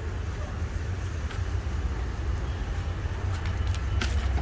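Steady low rumble of outdoor background noise with a faint even hiss over it, and a few faint clicks near the end.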